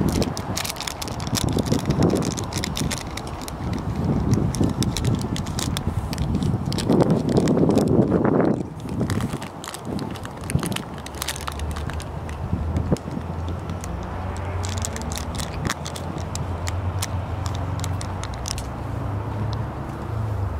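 Wind buffeting a handheld microphone in gusts for the first half, with scattered clicks and scuffs of walking and camera handling. A steady low hum takes over in the second half.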